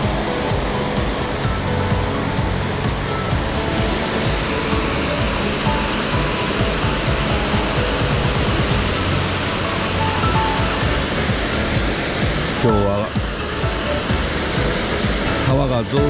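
Rushing water of a small waterfall pouring over a stone weir into a pool, a steady hiss that grows louder about three and a half seconds in, with background music playing over it.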